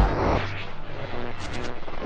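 Electronic background music drops away about half a second in, leaving a quieter steady drone.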